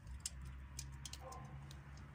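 Faint, scattered soft ticks and crackles of crumbly vermicompost being worked in a hand, bits dropping back into the bucket, over a low steady hum.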